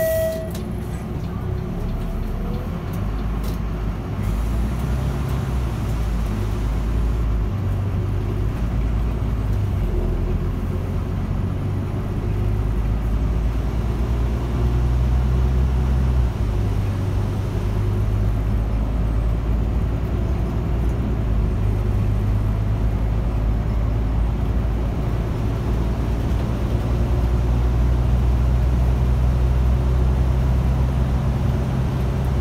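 Volvo bus's engine running, heard from on board as the bus drives, its low note stepping up and down several times. A short beep sounds right at the start.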